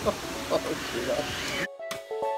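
Steady rushing background noise with faint voices. About 1.7 s in it cuts off abruptly, and background music of short, distinct notes takes over.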